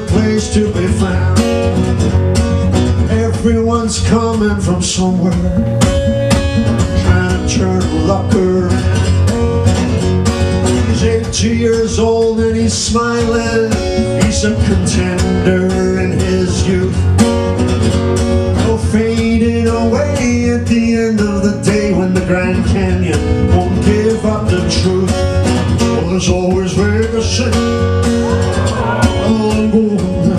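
Steel-string acoustic guitar strummed steadily as song accompaniment, with a man's voice singing at times.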